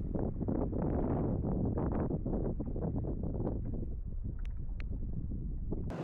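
Wind buffeting the microphone of a small boat under way: a low, uneven rumble with the wash of water around the stern, and no motor tone standing out.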